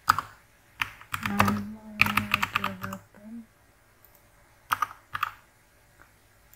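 Typing on a computer keyboard in quick clusters of keystrokes, with pauses between clusters. A person's voice sounds briefly beneath the typing between about one and three seconds in.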